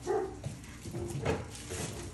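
A dog giving a few short barks.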